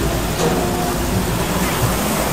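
Steady hiss of chicken pieces sizzling over a charcoal grill as they are turned by hand, with faint voices behind it.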